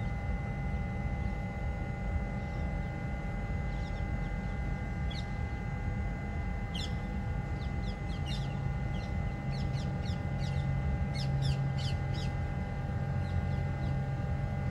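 Bird calls: clusters of short, high, falling chirps from about four seconds in until near the end. They sit over a steady hum with a low rumble, heard from inside a waiting car, and a deeper hum swells in about halfway through.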